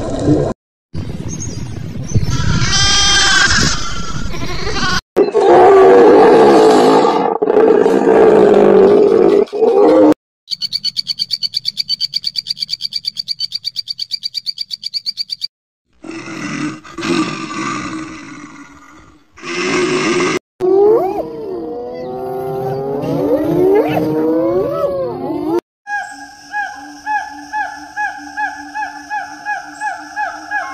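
A string of different animal calls, cut together and changing suddenly every few seconds. One stretch is a fast, even pulsing; another has calls gliding up and down in pitch; near the end a short call repeats several times a second.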